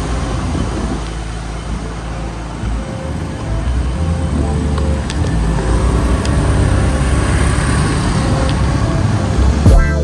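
Riding noise from a Suzuki Burgman 125 scooter's single-cylinder engine moving through city traffic, growing louder in the second half as it picks up speed, with background music underneath. Just before the end a cut brings in louder music.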